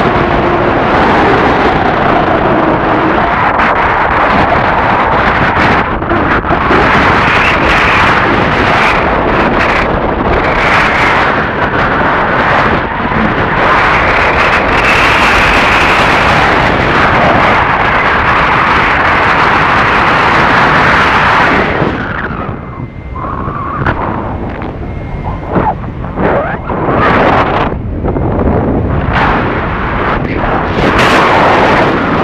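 Rushing air in flight buffeting a phone's microphone: a loud, steady roar of wind noise that eases and turns gusty about three-quarters of the way through.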